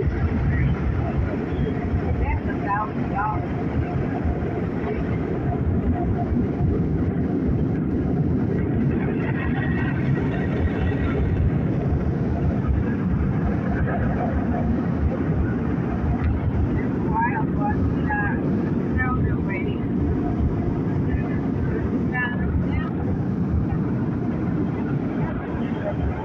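Automatic tunnel car wash heard from inside the car: a steady, loud rush of noise from the wash equipment working over the car.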